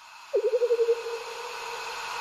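Synthesized intro sound effect for an animated logo: a hissy swell with a wavering, pulsing tone that enters about a third of a second in and settles into a steady hum.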